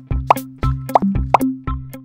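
Playful background music: a bouncy bass line with quick plopping, plucked notes several times a second.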